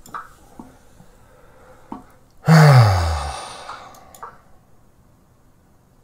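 A man's loud, exasperated sigh about two and a half seconds in, voiced and falling in pitch over about a second before trailing away: frustration at having just blundered into a lost position.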